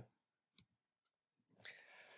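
Near silence broken by two faint clicks of a computer mouse, one about half a second in and another about a second later, as the presentation is clicked on to the next slide.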